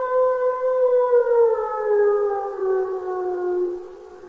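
A siren-like tone held steady, then slowly winding down in pitch and fading.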